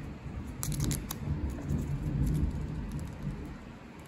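Thunder rumbling low and rolling, dying away near the end. A few light clicks come about a second in.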